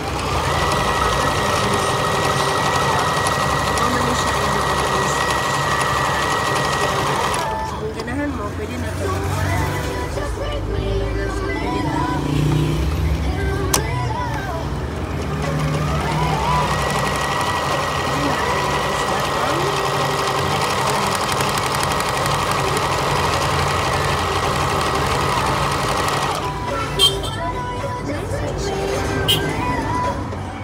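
Brother electric domestic sewing machine running steadily at speed while stitching through fabric. It runs for about seven seconds, stops, then starts again and runs for about ten seconds more before stopping near the end.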